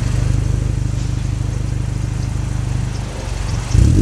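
A 2014 Mazda 3's 2.5-litre four-cylinder engine idling steadily through a MagnaFlow aftermarket exhaust (part #15297), heard at the tailpipes. Near the end the revs start to climb sharply.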